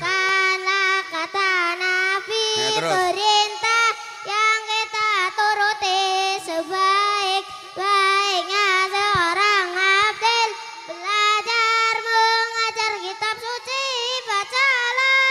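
A young boy's high voice chanting a long, ornamented melody into a microphone, in drawn-out phrases with wavering held notes and short breath pauses between them, in the melodic style of Qur'an recitation.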